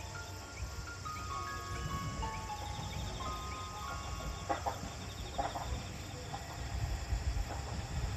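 JR Geibi Line train-approach melody from the platform speakers: a chime-like tune of held notes that plays out over the first few seconds, above a steady low rumble. A few short bird calls follow midway.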